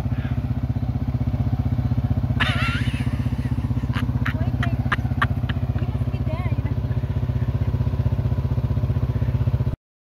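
ATV engines idling steadily with an even pulsing beat. A brief voice is heard about two and a half seconds in, and a few sharp clicks come a little later. The sound cuts off abruptly just before the end.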